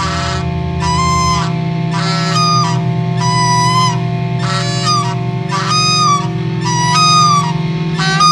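A live instrumental rock band holds a steady low drone. Over it, a high lead line plays short, bending notes about once a second.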